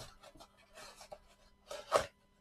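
Gloved hands rubbing and scraping on a cardboard mailing box as it is worked open, in a run of short scratchy bursts with the loudest near the end.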